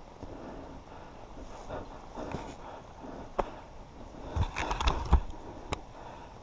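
Close handling noise: faint rustling, a sharp click past the middle, then a cluster of low thumps and knocks near the end as the stopped rider handles his goggles with gloved hands. No engine is heard running.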